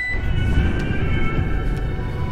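Ominous film score with held high notes over a loud, dense low rumble.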